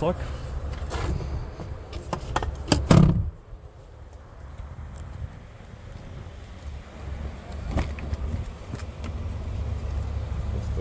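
A few knocks, then a loud heavy clunk from the rear of the Hyundai Santa Fe about three seconds in. A steady low rumble follows, with a single sharp click near eight seconds.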